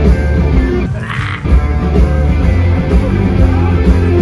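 Rock music from a band with electric guitar and a heavy bass-and-drums low end; the low end drops out briefly about a second in.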